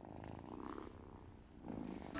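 A niffler, the mole-like creature from Fantastic Beasts, giving a faint, low purring rattle. It sounds once in the first second and again near the end.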